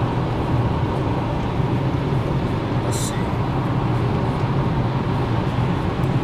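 Steady road and engine noise inside a moving car's cabin, a low even rumble, with one brief sharp high noise about halfway through.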